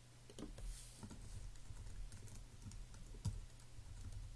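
Typing on a computer keyboard: a run of soft, quick key clicks, with one louder keystroke a little after three seconds.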